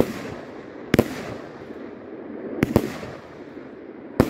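Mixed 20/25/30 mm consumer firework battery (cake) firing shot by shot: four sharp reports, one at the start, one about a second in, and a quick pair near three seconds, each trailing off in a rolling echo.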